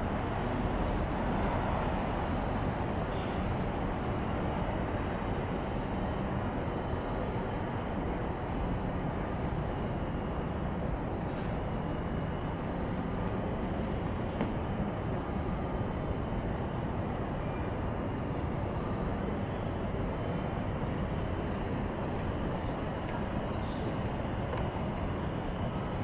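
Steady low rumble of outdoor city background noise, with no distinct events standing out.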